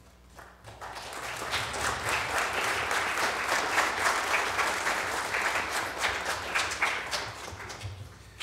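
Audience applauding: the clapping starts about half a second in, quickly fills out, and tapers off near the end.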